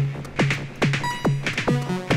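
Modular synth techno groove run through a Eurorack compressor. A synthesized kick drum with a fast downward pitch sweep lands a little over twice a second, with noisy hi-hats between the kicks and short, bright pitched synth notes joining about a second in.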